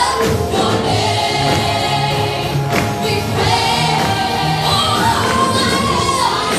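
Live gospel worship music: a church worship team's singers sing together as a choir over a live band, with steady bass notes underneath.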